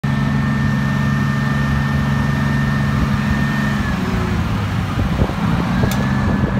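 Motor vehicle engine running with a steady low hum, heard from on board the art car. About four seconds in the even hum breaks up into a rougher, more uneven rumble as the vehicle gets moving.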